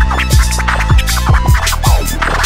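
Hip hop beat with turntable scratching: a record cut back and forth in quick strokes over a steady, deep kick-drum pattern, with no rapping.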